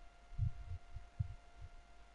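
Four or five dull, low thumps in quick succession, over a faint steady hum.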